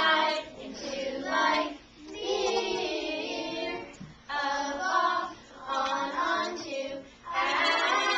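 A group of children singing a memory song that lists English prepositions, in short sung phrases with brief breaths between them.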